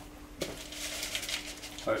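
Kitchen handling noise as a springform cake tin is readied: a click about half a second in, then light scraping and rustling for over a second.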